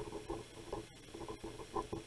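Felt-tip pen writing on paper: a run of short, irregular squeaks as each stroke of the letters is drawn.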